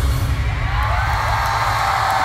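Live pop music over an arena sound system, heavy bass, with a crowd screaming and cheering; rising high-pitched screams come in about half a second in.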